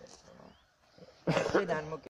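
A person's voice speaking a few words near the end, after a quiet stretch.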